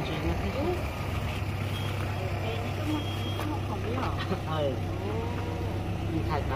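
A motor vehicle engine running with a steady low hum, a little stronger in the second half, under people talking.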